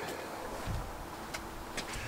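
Faint handling sounds as a car's sound-insulation panel is lifted out: a soft low bump a little under a second in and a couple of light ticks over a quiet background.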